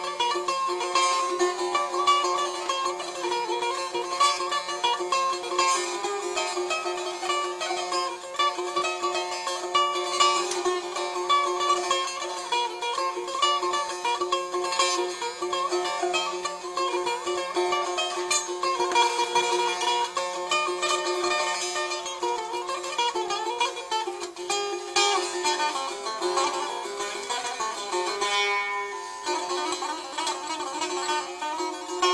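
Setar, a Persian long-necked lute, played solo: a continuous melody of plucked notes over a steady low ringing note. Near the end the playing breaks off and a string's pitch slides as its tuning peg is turned.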